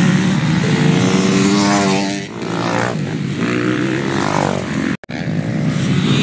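Motocross bike engine revving hard, its pitch climbing and dropping again several times as the rider works the throttle and gears. The sound cuts out for a split second about five seconds in.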